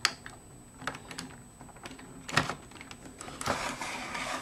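Hands handling a Hot Toys Iron Man Mark III action figure: a few small plastic clicks and knocks from its armour parts, the loudest right at the start and another about two and a half seconds in, with a brief rustle near the end.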